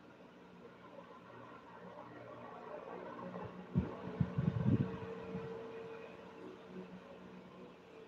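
A faint, steady mechanical hum, with a quick run of soft low bumps about halfway through.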